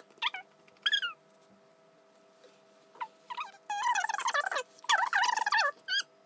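High-pitched wordless vocalizing from a small child: short squeals and warbling sounds in several bursts, longest and loudest in the second half.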